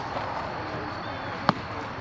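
A baseball bat hitting a pitched ball once, a single sharp crack about one and a half seconds in, over faint open-air background noise.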